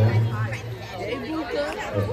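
Crowd chatter: many girls' voices talking over one another, with a low hum under it that is strongest in the first second.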